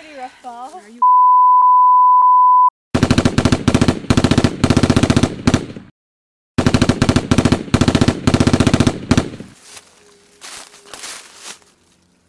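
A loud, steady high beep tone held for under two seconds. Then two bursts of rapid machine-gun fire, each about three seconds long, with a short gap between them.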